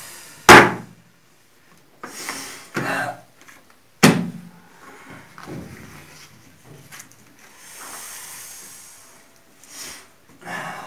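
Two sharp thumps on a tabletop during a card game: the loudest about half a second in, another about four seconds in, with softer handling sounds between them.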